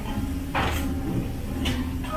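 Crisp breaded crust of a deep-fried kushikatsu skewer crunching as it is bitten and chewed: two short crunches about a second apart.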